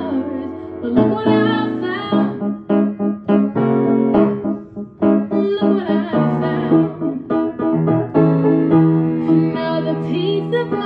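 A woman singing a pop ballad, accompanying herself on an upright piano with repeated chords.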